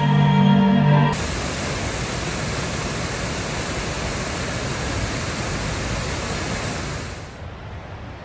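Steady rushing of a large waterfall, Mena Creek Falls, pouring into its plunge pool. It comes in suddenly about a second in, after string music stops, and falls away to faint outdoor ambience near the end.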